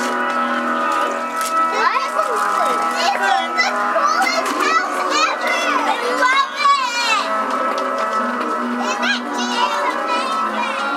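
Several children talking and squealing excitedly, high voices overlapping in bursts, over background music with steady held tones.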